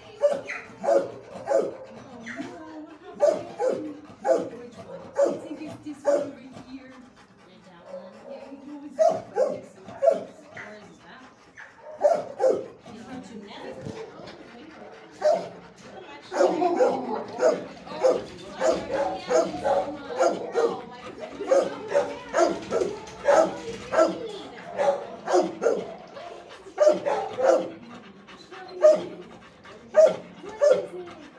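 Shelter dogs barking in their kennels, several dogs' barks overlapping, coming thickest from about halfway through.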